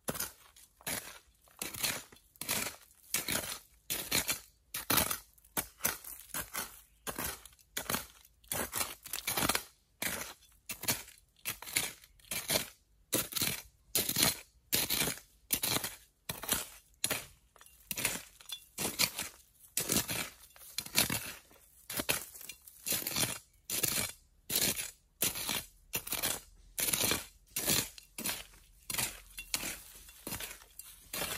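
A small short-handled metal digging tool chopping and scraping into dry, crumbly soil, a quick gritty stroke about twice a second, over and over.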